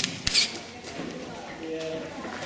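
Two sharp knocks in quick succession at the start, followed by faint, indistinct voices of people talking in a stone catacomb passage.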